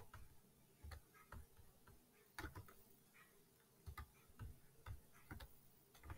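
Faint, scattered clicks of a computer mouse, about ten of them, over near silence.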